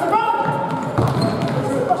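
Soccer ball kicked and thudding on a gymnasium's wooden floor during an indoor game, one sharp thud about a second in. The players' shouts echo in the large hall.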